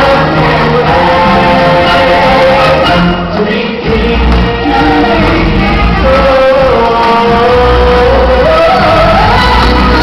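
Choir of voices singing over loud backing music from a live stage show, with held, gliding sung notes and deep bass notes coming in about four seconds in and again near the end.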